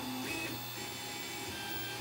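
3D printer running as it prints a layer: the stepper motors give a whine of several steady tones that shift briefly as the print head changes moves, over a steady low hum from the printer's fans.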